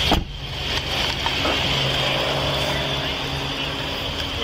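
Patrol car idling, heard from its in-cabin dash camera: a steady low engine hum with a steady high hiss over it, after a brief break right at the start.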